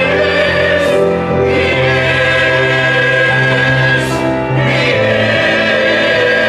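Mixed church choir singing a slow anthem in long held chords, with piano accompaniment.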